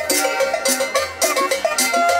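Live dance music from a small acoustic band: upright bass notes under hand drums and bright metal percussion striking about four times a second, with a melody line over them.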